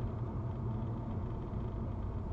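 Steady low road and engine rumble of a car driving at highway speed, heard from inside the cabin.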